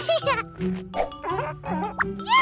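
Light cartoon background music with several short, squeaky character calls, each sliding down in pitch.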